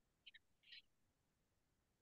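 Near silence: room tone, with two tiny faint ticks and a brief soft hiss within the first second.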